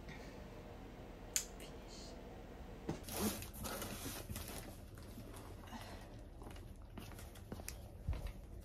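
Cardboard boxes being lifted and shifted, with cardboard rustling and scraping from about three seconds in and then scattered light knocks. A single sharp click comes a little over a second in.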